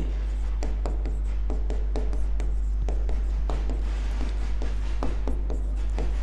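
Pen writing on a digital classroom board: irregular small taps and scrapes of the pen tip as the words are written, over a steady low electrical hum.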